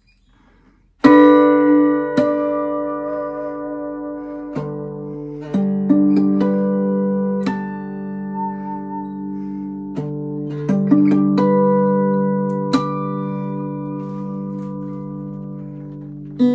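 Acoustic guitar in open G tuning, fingerpicked: after a second of near silence a loud chord is struck and left ringing, then slow single notes and chord changes are plucked over the sustain.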